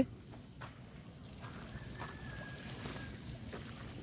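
Faint outdoor background noise with a few light clicks, and a faint, thin, steady tone lasting about a second and a half in the middle.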